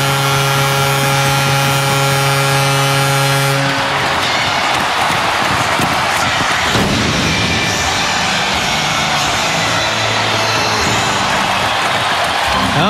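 Ice hockey arena goal horn sounding one steady low chord for about the first four seconds, over a loudly cheering crowd, marking a home-team goal. After the horn stops, the crowd keeps cheering with music playing over the arena speakers.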